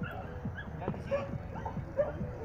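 A dog barking a few short times, once about a second in and again near the end.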